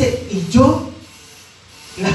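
A man preaching through a handheld microphone and PA loudspeaker: a short phrase, then a pause about a second in.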